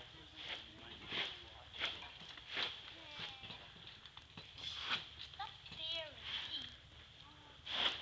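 Footsteps on a dirt and gravel campground at a walking pace, a short knock about every two-thirds of a second, with faint children's voices in the background.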